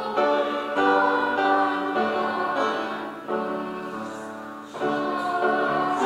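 A hymn sung by many voices together with instrumental accompaniment. The singing eases on a softer held note in the middle, and the next line begins near the end.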